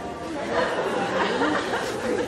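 Theatre audience murmuring and chattering, many voices at once, in a large hall.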